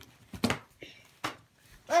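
A few short, separate clicks and taps from small plastic toy pieces being handled, then a child starts to speak at the very end.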